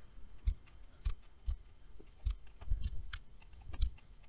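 Irregular clicks of a computer keyboard and mouse being worked at a desk, with a few soft low thuds among them.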